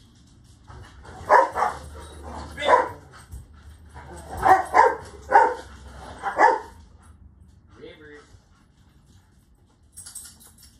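A dog barking: about seven short, sharp barks in two bursts, the first group about a second in and the second from around four seconds, the last near the seven-second mark.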